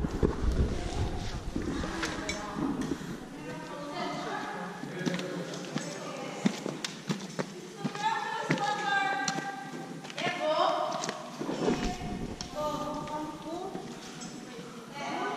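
Several people talking indistinctly, with scattered footsteps and knocks on wooden boards. Low handling rumbles on the microphone come in the first second or so and again about twelve seconds in.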